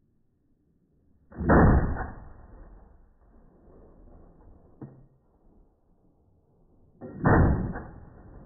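Two single gunshots from a Colt M4 carbine (5.56 mm), the first about a second in and the second about six seconds later, each a sharp crack followed by a short echoing tail.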